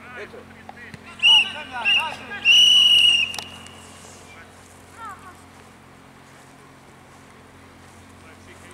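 Referee's whistle blown twice briefly and then once for about a second, over young players' voices calling on the pitch.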